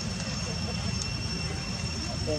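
Steady outdoor background: a continuous low rumble with two constant high-pitched whining tones over it. No distinct monkey call stands out.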